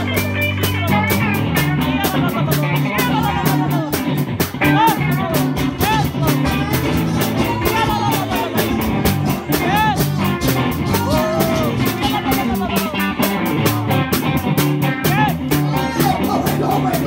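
Live gospel worship music: acoustic guitar and sustained low bass notes over a steady quick beat, with a high melody line sliding between notes.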